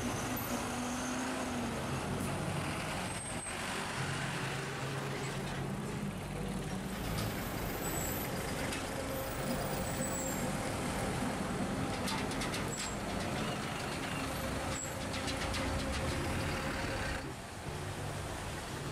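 Street traffic: engines of a city bus, trucks, cars and a motorcycle running and passing in a steady mix, with a few brief clicks.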